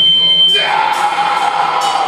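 Live extreme metal band playing: distorted electric guitar and bass holding sustained notes. A high steady whine sounds for the first half second.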